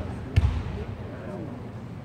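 Indistinct chatter of voices echoing in a large sports hall, with one dull low thump about half a second in.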